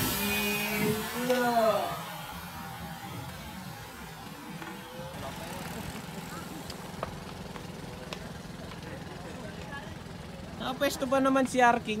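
Voices talking for the first couple of seconds, then several seconds of quiet roadside background with a steady low hum, and voices again near the end.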